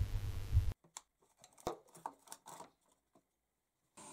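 Brief steady hiss, then near silence with a few faint clicks and taps of handling, from power supply bricks being set onto MDF shelves.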